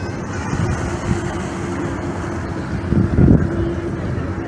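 Wind buffeting the microphone at an open waterfront, with a steady low drone underneath and a stronger gust about three seconds in.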